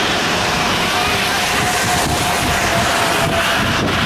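Wind buffeting the microphone: a loud, even rushing noise with gusty rumble underneath. A faint steady tone runs in the background through most of it.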